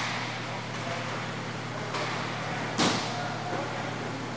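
Several sharp clacks of hockey sticks and ball or puck echoing around a large indoor rink, the loudest about three seconds in, over a steady low hum.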